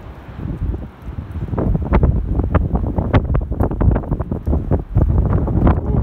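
Wind buffeting the microphone, and from about a second and a half in, footsteps on beach pebbles: rapid, irregular clicks of stones knocking together.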